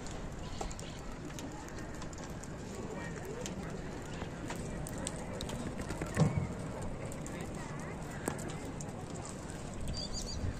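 Quiet outdoor ambience of a snow-covered city street with faint distant voices, and a single short thump about six seconds in.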